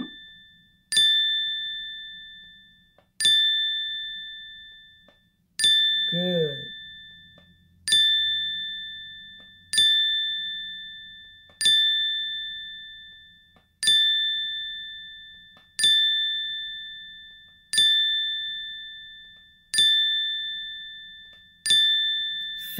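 A bell-like ding struck eleven times, about every two seconds, each strike ringing out and fading before the next. The dings mark the letters of a word being spelled out one at a time.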